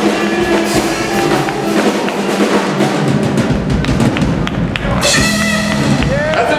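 Live blues band playing amplified, with the drum kit out front: many sharp drum and cymbal hits over electric guitar and bass. About five seconds in, held chord tones come in, as at the close of a song.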